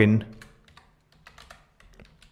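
Typing on a computer keyboard: a short run of faint, irregular keystrokes as a word is typed.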